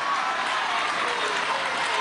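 Audience applauding steadily, with a few faint voices in the crowd.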